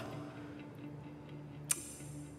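Background score holding a low steady drone, with faint ticking and one sharp click near the end.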